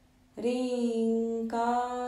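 A voice chanting a mantra in long held notes, coming in about a third of a second in and moving to a new held syllable about halfway through. A faint steady tone at the same pitch is there before the voice enters.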